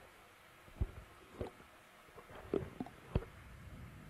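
A few faint, short knocks spaced irregularly over a low steady hiss.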